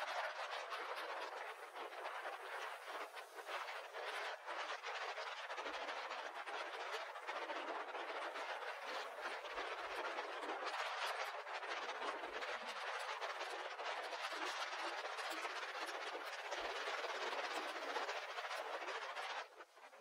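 Seawater rushing and splashing in churning foam, with wind on the microphone, a steady rushing noise that drops away sharply just before the end.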